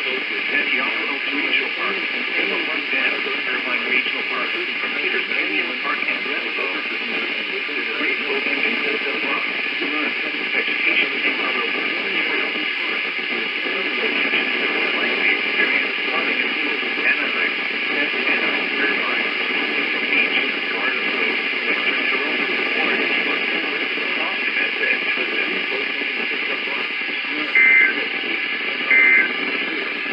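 A broadcast voice from a small radio's speaker, hissy with poor reception. Near the end come two short warbling data bursts, the start of an Emergency Alert System SAME header.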